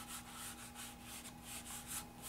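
Fingers rubbing and blending charcoal on drawing paper in quick back-and-forth strokes, several a second, to shade the upper eyelid; a faint, soft swishing.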